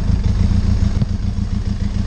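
Benelli TRK 502 X's parallel-twin engine running steadily at low revs as the bike creeps down a rocky dirt track, with a few faint knocks from the wheels over stones.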